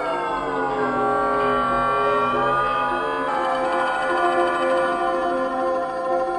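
Piano with live electronics: a dense cluster of sustained tones slides down in pitch at the start, then drifts slowly back up and settles again on the held chord about three seconds in.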